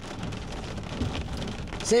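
Heavy rain drumming on a truck's windshield and roof, heard from inside the cab, with a low rumble of thunder swelling about a second in.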